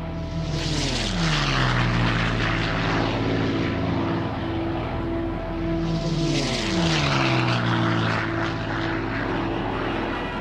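Propeller-driven aircraft flying past twice, their engine note dropping in pitch as each one passes: once about a second in and again about six seconds in.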